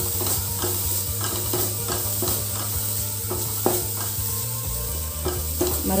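Wooden spatula stirring and scraping grated coconut as it fries in a metal pan, in repeated short strokes over a steady hiss. A low steady hum runs underneath and drops in pitch near the end.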